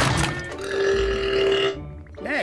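A cartoon flying-saucer character's burp after draining a can of oil through a straw: a sharp click at the start, then one held belch from about half a second in to near the end.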